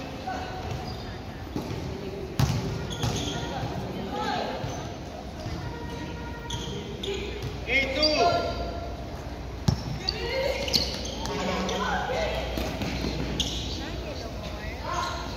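Basketballs bouncing on a gym court, with two sharp thuds standing out, about two and a half seconds in and near ten seconds, amid indistinct shouts of the players echoing in a large hall.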